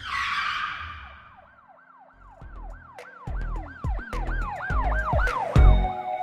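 Produced logo sting: a whoosh, then a siren-like tone that rises and falls about three times a second over a bass beat that builds, ending on a heavy low hit.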